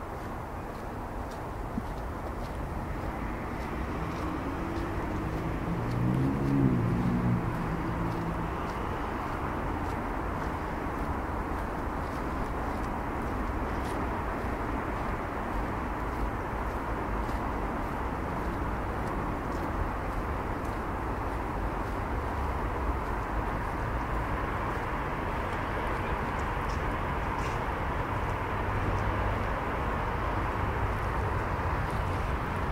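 Steady hum of city traffic, swelling slowly, with an engine passing that is loudest about six to seven seconds in.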